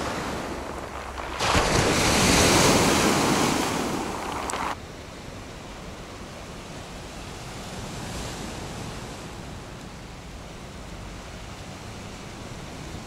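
Small Black Sea waves breaking and washing over a pebble beach. The wash is loud for a few seconds and cuts off abruptly about five seconds in, leaving a quieter, steady sound of sea surf.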